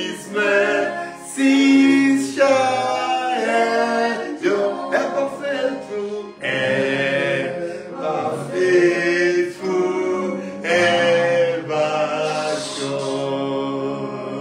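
A man singing a hymn unaccompanied, in held notes and phrases of a second or two with short breaks between them.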